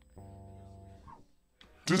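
Electric bass guitar plucked once, playing a single low note held for just under a second before it stops.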